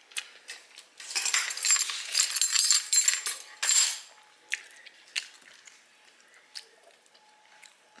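Rustling with light clinks for about three seconds, then a few scattered short clicks.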